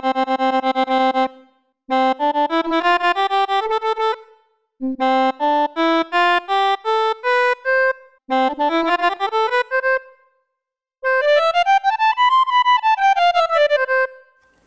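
Odisei Travel Sax digital saxophone sounding its app's soprano saxophone voice, played with fast tonguing: a quick string of repeated notes on one pitch, then runs of short detached notes climbing in scales, the last one rising and falling back, with short breaks between phrases. The player judges the tonguing less spontaneous and a bit short of speed compared with slurred playing.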